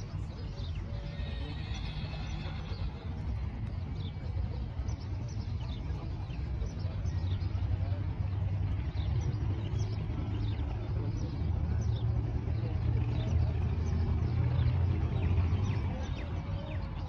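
A horse whinnying briefly about a second in, over a steady low rumble that grows louder, with many short high chirps through the rest.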